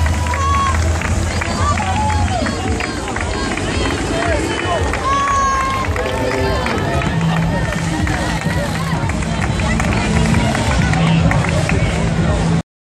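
Spectators' voices and crowd chatter over loudspeaker music with a steady low bass.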